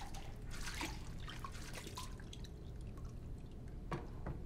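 Soapy water dripping and trickling down a glass shower screen in a marble shower stall, in small irregular drips over a steady low room hum. There is a single soft knock near the end.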